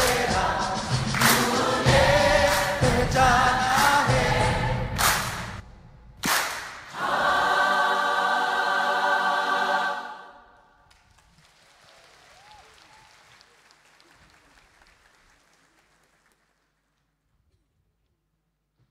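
Choir singing with rhythmic hand claps, then a long held final chord that cuts off about ten seconds in. Faint hall noise follows and dies away.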